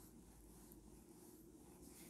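Faint rubbing of a cloth wiping marker writing off a whiteboard.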